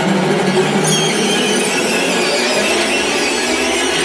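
Loud dissonant orchestral film score, with high strings screeching and sliding in pitch over a low held tone that fades out after about a second and a half.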